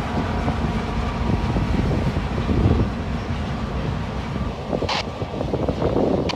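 Slow-moving freight train rolling past: a steady low rumble of steel wheels on rail as covered hopper cars go by, with a brief sharp metallic sound about five seconds in.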